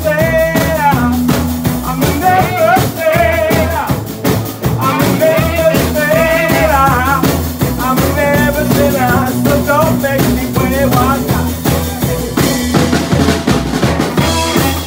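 A live blues band playing: electric guitar, plucked upright double bass and drum kit keeping a steady beat, with a man singing over them.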